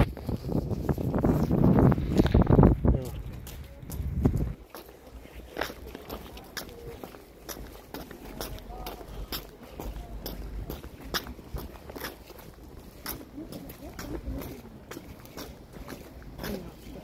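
Footsteps on stone paving, sharp clicks about two a second, with people talking during the first few seconds.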